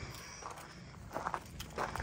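Faint footsteps on gravel, a few irregular steps.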